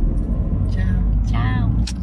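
Low steady rumble of a car heard from inside its cabin, with two short vocal sounds partway through and a sharp click just before the end.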